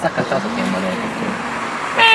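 Road traffic noise from a car on the street, a steady rush, with low voices talking over it early on.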